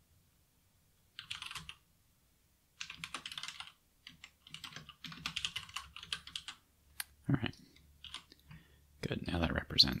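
Typing on a computer keyboard: several quick runs of keystrokes with short pauses between them.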